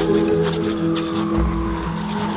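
Ice dance free dance program music: held, sustained notes with a higher tone sliding slowly downward.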